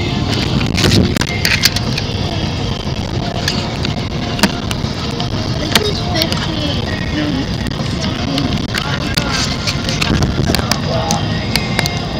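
Steady road and engine rumble heard inside a moving car's cabin, with scattered short clicks and knocks throughout.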